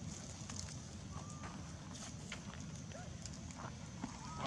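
Two brief, faint squeaks from a baby macaque, about a second in and about three seconds in, over a steady low rumble with scattered light clicks.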